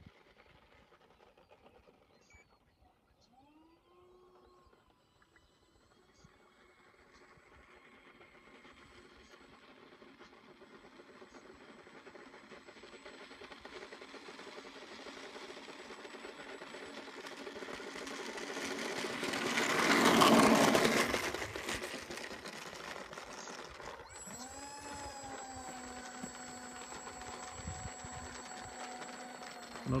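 Twin electric ducted fans of an RC model Learjet 45 whining as it comes in low on its landing approach, growing steadily louder to a peak as it passes about twenty seconds in, then falling away. A few seconds later the whine drops in pitch and settles to a steady lower note as the fans are throttled back on the runway.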